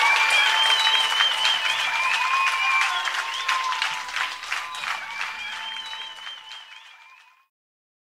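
Audience applauding at the end of a live blues recording, with a few long wavering tones above the clapping. The applause fades out and cuts to silence about seven seconds in.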